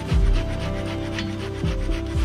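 Fast back-and-forth rubbing on the bark of a cherry branch, a rasping scrub of about six strokes a second, as the old bark is polished off by hand, with background music underneath.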